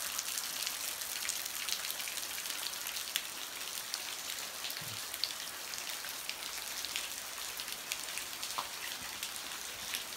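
Steady hiss of a shallow creek running over rocks, with many small scattered ticks of splashing water.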